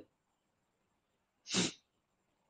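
A single short, breathy puff from a person's nose or mouth about one and a half seconds into a pause in the talk.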